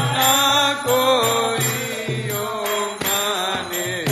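Devotional chanting (kirtan): voices singing a mantra-style melody over metallic percussion and a steady low beat.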